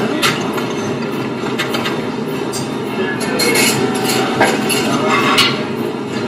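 Long metal bar spoon stirring ice in a tall glass: a few light clinks of spoon and ice against the glass, about one a second, over a steady background hum.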